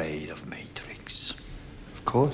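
A man speaking quietly, in a low voice close to a whisper.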